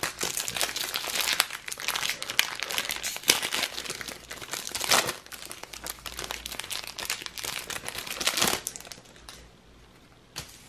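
Foil trading-card booster pack crinkling and rustling in the hands as it is torn open and the cards are pulled out, with louder crackles about halfway through and again near the end before it dies down.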